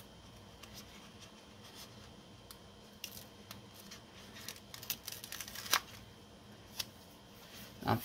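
Fingernails picking at and peeling a paper floral sticker off its backing sheet: faint scattered ticks and crinkles, busier in the second half, with a few sharper clicks.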